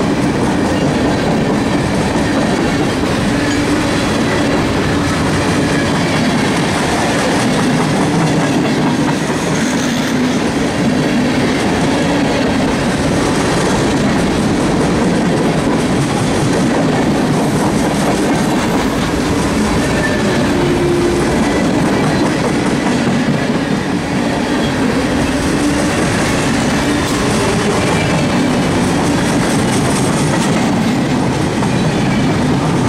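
Freight cars rolling past close by: a loud, steady rumble of steel wheels running on the rails as boxcars, a tank car and open-top cars go by one after another.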